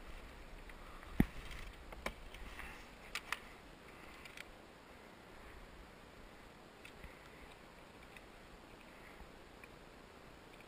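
Faint handling noise on a kayak: a few short, sharp knocks and clicks as gear and the fish are handled, the loudest about a second in, then fewer and fainter ticks over a low steady hiss.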